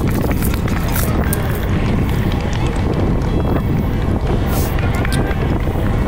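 Wind buffeting the microphone of a bike-mounted camera at racing speed, a steady loud rumble, with the rider breathing hard and a few short clicks.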